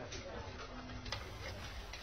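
Sharp ticks about a second apart, like a clock ticking, over a low steady room hum.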